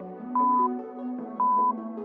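Workout interval timer's countdown beeps: two short, loud, single-pitch high beeps about a second apart, marking the last seconds before the next exercise, over background music.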